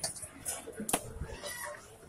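Rohu fish pieces being cut and handled on an upright boti blade: a few sharp wet knocks, the loudest about a second in.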